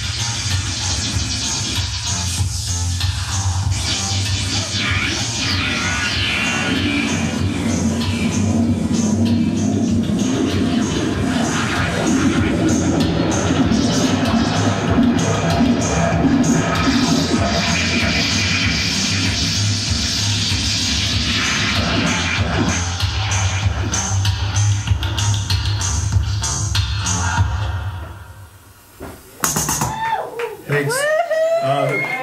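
Loud live electronic music played on a pad sampler, dense and layered with a steady rhythmic pulse, cutting out about two seconds before the end.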